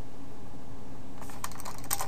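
Keystrokes on a computer keyboard: a quick run of clicks starting a little past halfway, over a steady low background hum.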